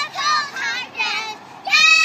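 Young girls singing loudly in high voices: a few short phrases, then a long held note near the end that slides down.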